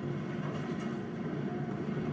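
Car engine and road noise running steadily, a low even rumble.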